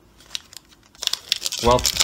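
Foil wrapper of a Pokémon booster pack crinkling and tearing as it is opened by hand, in quick crackles that start about a second in after a near-quiet first second.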